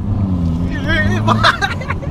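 Hyundai Verna 1.6 CRDi's Stage 2 remapped four-cylinder turbodiesel accelerating hard, heard from inside the cabin; the engine note rises, then drops about a second and a half in. A person laughs and exclaims over it.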